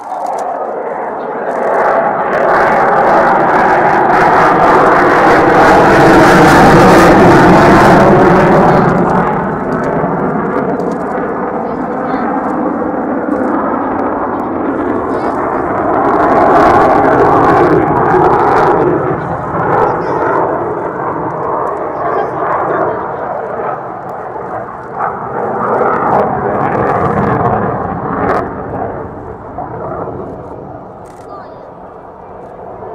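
F-15J fighter jet's twin afterburning turbofan engines passing overhead: loud, steady jet noise that swells within the first two seconds, is loudest about seven seconds in, eases, then rises again around seventeen seconds in and fades toward the end.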